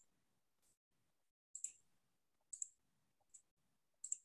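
Near silence with a few faint, short clicks: two quick pairs about a second apart, then a single click near the end.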